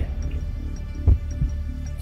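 Quiz-show countdown music for the thirty-second answer time: a low heartbeat-like pulse over a steady hum, with light high ticks. The strongest pulse comes about a second in.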